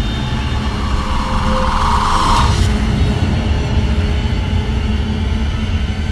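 Ominous horror-drama background score: a steady low rumbling drone, with a rising hiss-like swell that cuts off about two and a half seconds in.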